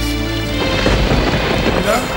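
Soundtrack music holding a steady chord, cut off about half a second in by a loud rumbling, rushing noise like a thunder and rain sound effect that carries on to the end.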